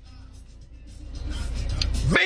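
Low vehicle rumble that grows steadily louder through the second half.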